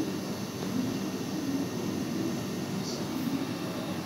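Quiet steady background noise with no distinct events, while dough is handled softly.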